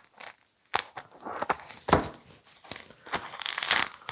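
Scissors cutting through a plastic sheet and its tape border, with the plastic and the acrylic-gel gold leaf skin crinkling as they are handled. There are a few separate snips and crackles, then a denser crinkling stretch near the end.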